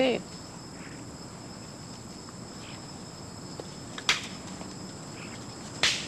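Steady, high-pitched chirring of insects, with two sharp snaps, one about four seconds in and one near the end.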